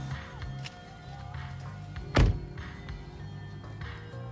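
A car door shut with a single loud thunk about two seconds in, over steady background music with a low rhythmic pulse.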